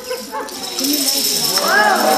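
Falling dominoes clattering in a dense, continuous rattle as the chain reaction runs across the floor. From about a second and a half in, several spectators' voices join in with drawn-out exclamations that rise and fall in pitch, over the clatter.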